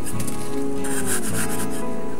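Small metal hand trowel scraping and scooping dry sand, a few short gritty strokes, over background music with steady sustained tones.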